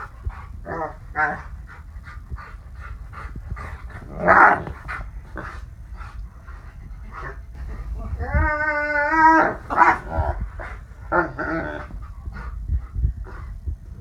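Dog moaning and grumbling in short bursts, with one longer held moan about eight seconds in, over a low rumble, in protest at being made to move off the person it is lying on.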